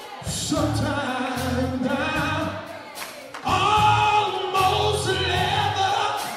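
Gospel choir music: several voices singing over a low instrumental backing, dipping briefly a little past three seconds in.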